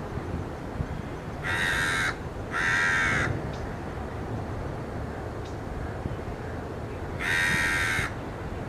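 Three harsh, grating bird calls, each about half a second long: two close together a couple of seconds in and one near the end, over steady low background noise.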